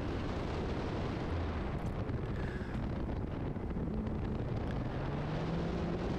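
Steady wind rushing over the microphone of a camera on the outside of an Alfa Romeo 4C at speed, with the car's turbocharged four-cylinder engine faintly underneath, its pitch rising slightly near the end.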